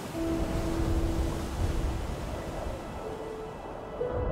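Soundtrack music of slow, long held notes that change pitch a couple of times, over a steady low rumble.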